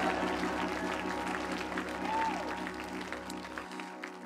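Soft instrumental church music of sustained held chords, fading gradually, with the bass dropping out near the end, under light applause from the congregation.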